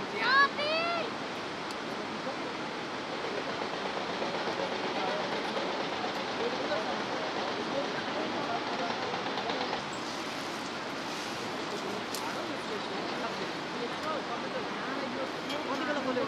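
Steady rushing of river rapids far below in a gorge, with a brief high-pitched shout near the start.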